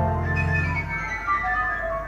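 Music from a vinyl record playing on a turntable with a linear-tracking tonearm, heard through a hi-fi system. A held low note stops about a second in, and a falling run of higher notes follows.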